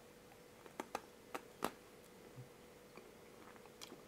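A chocolate sandwich biscuit being bitten and chewed: a few faint, short crunches between one and two seconds in, and one more near the end.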